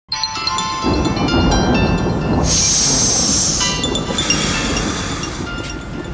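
Ambient music intro: sustained steady tones over a low rumble, with a bright hissing swell for about a second in the middle.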